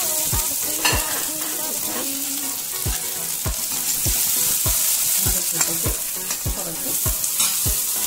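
Oil sizzling steadily in a cast-iron kadai as chopped green aromatics fry and are stirred with a steel ladle. Under it runs background music with a regular beat.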